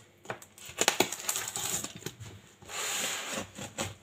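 A knife cutting and scraping at packing tape on a cardboard box. A string of sharp taps and knocks against the box comes first, then a steady scrape a little under three seconds in.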